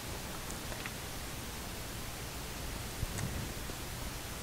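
Steady low hiss of room tone with a few faint soft ticks, and a slight brief bump about three seconds in.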